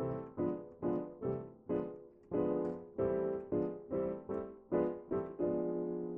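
Yamaha digital piano in a piano voice playing two-handed block chords, alternating C6 inversions and diminished chords from the C sixth-diminished scale. About a dozen chords are struck, a little over two a second, with a brief pause before two seconds in, and the last chord is held.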